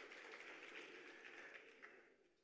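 Near silence: faint room tone of the hall, slowly fading.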